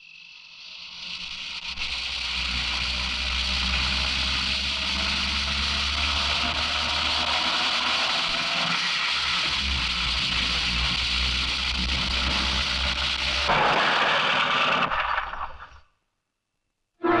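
A truck's engine running with a low rumble under a steady hiss, building up in the first two seconds. Near the end a louder hiss lasts a couple of seconds, then the sound cuts off abruptly.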